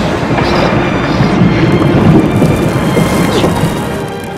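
A loud, deep rumble, like thunder, in an animated film's soundtrack, with music underneath and two short high squeaks, one about half a second in and one near the end.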